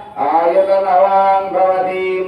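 A male voice chanting Sanskrit mantras in long, held melodic phrases, with a short breath gap just after the start.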